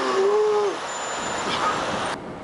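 City street traffic noise, a steady rush of passing vehicles. A short pitched tone rises and falls within the first second.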